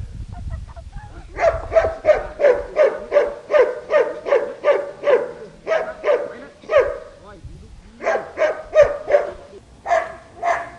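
A small poodle barking in a steady, regular series of short barks, about two to three a second, with a brief pause about seven seconds in before a few more barks.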